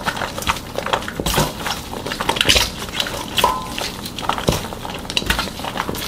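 Gloved hands tossing and shaking apart squeezed, blanched water dropwort (minari) in a stainless steel bowl: rustling of the damp greens with light clicks and taps against the bowl.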